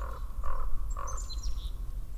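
Birds calling: three short nasal notes about half a second apart, with a few thin high chirps between them.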